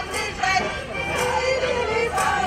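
A group of women's voices from a folk ensemble singing together over stage loudspeakers, with a held note near the end.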